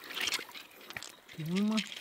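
Water splashing and trickling as a hand swishes small quartz crystals in shallow stream water to rinse them, for about the first second and a half.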